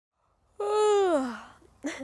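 A woman's voiced yawn, about a second long, its pitch sliding down as it fades.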